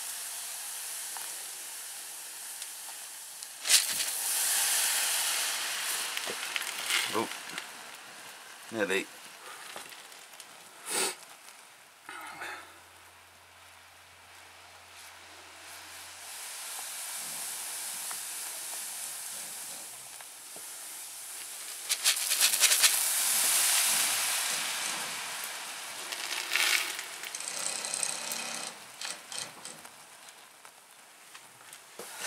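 Hot caustic soda (sodium hydroxide) solution fizzing and sizzling in a saucepan as silica gel dissolves in it. The froth swells loudest twice, early on and again past the middle, as the exothermic reaction keeps it near boiling over. A wooden spoon stirs and now and then clicks against the metal pan.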